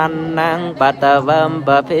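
Buddhist chanting in a melodic, sung style by a single voice, held notes bending in pitch and broken by short breaths, over a steady low drone.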